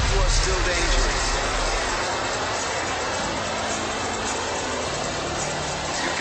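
Jet fighter engine noise from a film soundtrack: a loud rush that eases after about two seconds into a steadier, lower rumble, with faint radio voices under it.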